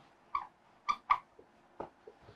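Marker squeaking on a whiteboard while writing: four short, high squeaks.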